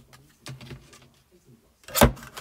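Quiet handling of cut paper strips and cardstock, with faint soft rustles and one sharp tap near the end as the card pieces are set down.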